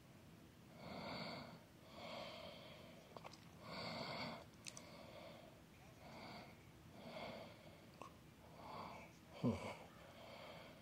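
A person breathing audibly close to the microphone, a breath about every second, each a soft puff of air. Near the end a louder breath comes out as a short voiced sigh.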